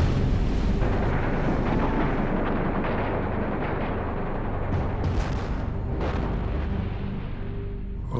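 A continuous rumble of battle sound effects, gunfire and explosions, with music underneath.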